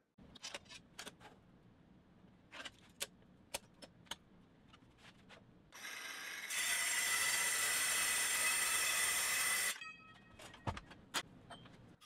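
Light clicks and taps of tools being handled on a copper sheet, then about six seconds in a Milwaukee circular saw spins up and cuts through the copper sheet for about three seconds with a steady, loud, high-pitched cutting noise that stops abruptly, followed by a few more clicks.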